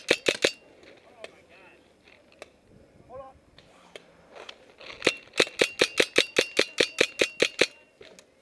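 Paintball marker firing: a quick burst of about four shots at the start, then a rapid, even string of about eighteen shots, roughly seven a second, from about five seconds in until just before the end.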